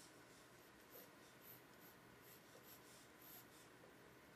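Faint scratching of a mechanical pencil's lead on paper: a handful of short sketching strokes.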